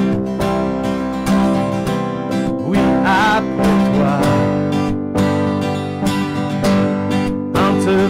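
Steel-string acoustic guitar strummed in a steady rhythm, chords ringing, under a man's singing voice that holds a wavering note about three seconds in and comes back at the end.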